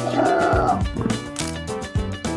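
A short animal snarl, a cartoon sound effect lasting under a second at the start, for a cardboard alligator, over background music.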